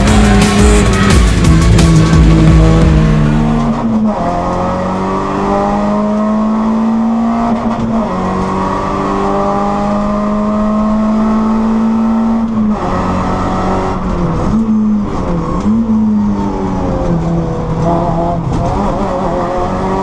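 Renault Mégane rally car's engine at high revs. Its pitch climbs steadily, then drops sharply twice, as at gear changes, and dips briefly twice more as the throttle is lifted and reapplied. The first few seconds are louder and noisier.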